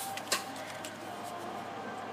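A brief click about a third of a second in as a gloved hand handles the plastic ignition coil connector, then only low, steady background noise.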